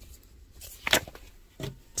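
Brief handling noises as a cardstock stencil is shifted into place on a plastic embossing mat: a sharp rustle-click about a second in and a softer knock near the end.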